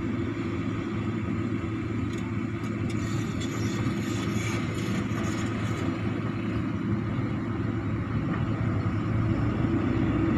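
An engine running steadily at idle, a constant low hum that does not rise or fall.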